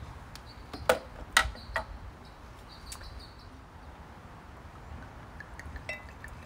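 Three sharp clicks about a second in as a bottle of red wine is opened and handled, with small birds chirping faintly in the background.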